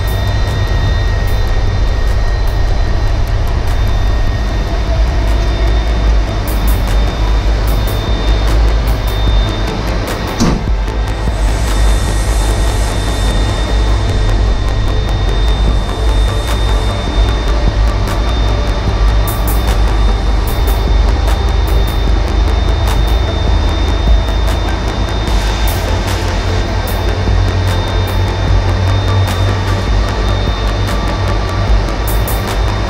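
An Airbus A330-200's jet engines running close by, heard as a steady low rumble with a thin, steady high whine, and a single sharp click about ten seconds in.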